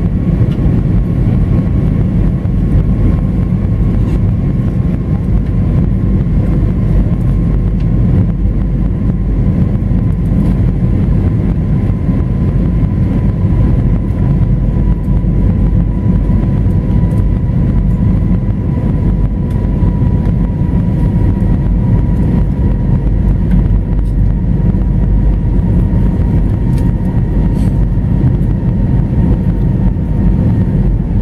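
Cabin noise of an Airbus A320 airliner in flight, heard from a seat behind the wing: a loud, steady rumble of the jet engines and airflow. A faint whine rides on top and slowly drops a little in pitch while the aircraft descends towards landing.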